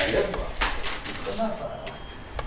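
Loose coins clinking and jingling together as they are tipped out of a glass into a cupped hand, loudest in the first second and a half, with a brief bright metallic ring.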